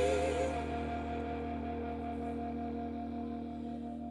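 Live rock band holding a sustained final chord: a sung note with vibrato ends about half a second in, and the held chord rings on, slowly fading.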